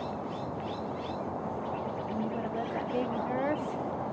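Faint, indistinct murmur of voices over a steady background hiss, with no clear words.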